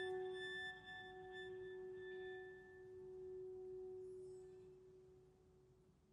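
The last struck note of an instrumental chamber piece rings on as one steady tone and slowly dies away.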